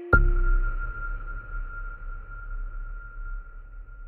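Electronic logo sting for ZEISS: a sudden deep hit, then one high ringing tone over a low rumble, fading out over about four seconds.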